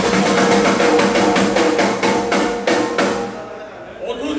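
Live rock band's drum kit: a steady beat of sharp hits about three a second over a held instrument note, trailing off over the last second.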